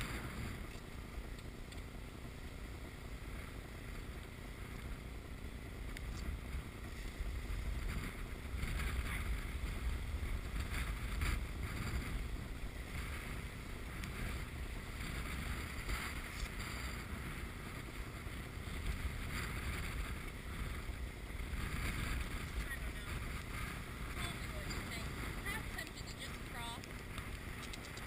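Wind buffeting the microphone and water rushing and splashing along the hull of a sailboat heeled over under sail in choppy water, a steady noise with stronger gusty stretches.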